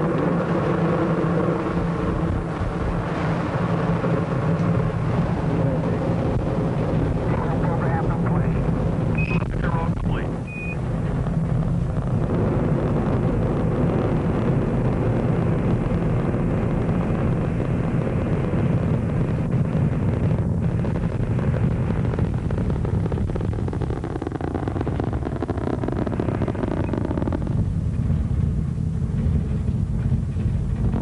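Rocket noise from Space Shuttle Columbia's two solid rocket boosters and three main engines climbing after liftoff, a dense, steady noise that thins in its middle range near the end. Two short high beeps of the NASA air-to-ground radio loop's Quindar tones come about ten seconds in.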